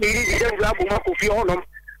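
A high, wavering voice crying out 'oh, oh' in long drawn-out tones, breaking off about one and a half seconds in.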